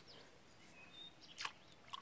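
Near silence with a few faint, short bird chirps about a second in and a brief soft rustle shortly after.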